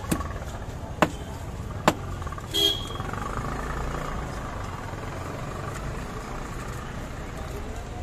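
Busy street background with a steady traffic hum and distant voices. Three sharp knocks come in the first two seconds, about a second apart, and a brief high tone follows at about two and a half seconds.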